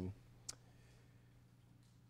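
Near silence, broken by one short, sharp click about half a second in.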